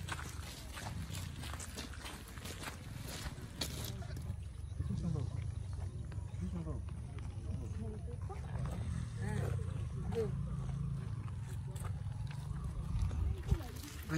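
Faint, indistinct voices of people talking at a distance over a steady low rumble.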